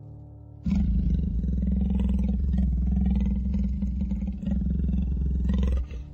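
A deep, growling big-cat roar sound effect that starts about half a second in, runs for about five seconds and cuts off just before the end.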